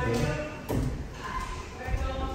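Bare feet thudding on wooden stairs as a man climbs them, two heavier steps about a second apart, under a voice.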